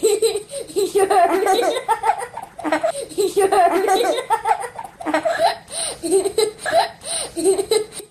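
Young children laughing and giggling in repeated, high-pitched bursts.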